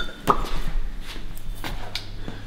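Metal exhaust pipe bends knocking together as one is picked out of a cardboard box: one sharp knock about a third of a second in, then a few lighter knocks.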